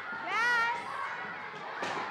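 A classroom of children chattering and shouting over one another, with one child's high-pitched yell about half a second in and a single sharp knock near the end.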